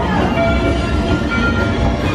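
Attraction show audio: a steady low train rumble and chugging, with short bright musical notes over it.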